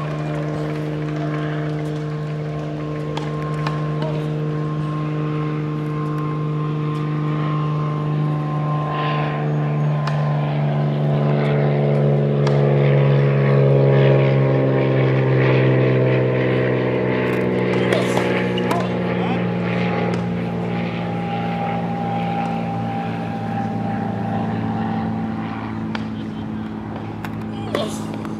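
A propeller aircraft's engine droning as it passes, loudest about halfway through, its pitch falling gradually as it goes by. A few sharp knocks of tennis balls being struck sound over it.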